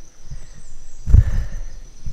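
A steady high insect buzz, with a brief loud low rumble about a second in, like wind or handling on the microphone.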